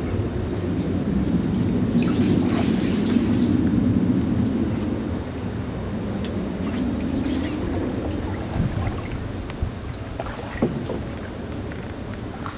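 Small boat moving along a mangrove channel: a steady low rumble of water under the hull, fading a little after the first few seconds, with a couple of light knocks in the last few seconds.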